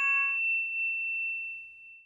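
The ringing tail of a single struck bell-like chime. Several tones die away within the first half second, leaving one high, clear tone that fades out slowly.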